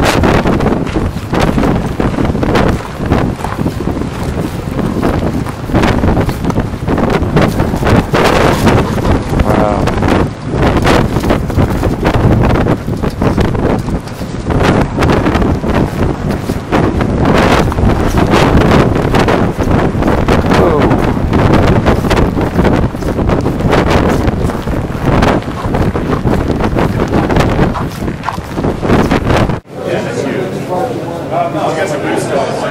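Wind buffeting the camera microphone: a loud, uneven, gusting rumble that swells and drops every second or two.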